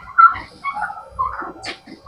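Several short animal calls in a row.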